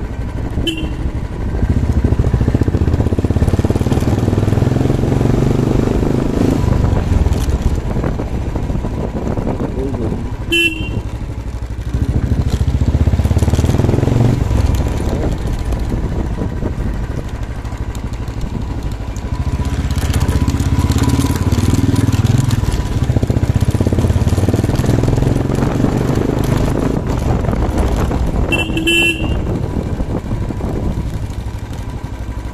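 Motorcycle engine running on the move, swelling and easing several times as the throttle opens and closes. Short horn beeps sound three times: just after the start, about ten seconds in, and near the end.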